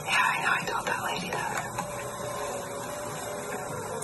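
Hushed voices whispering, loudest in the first second, then a steady background hiss.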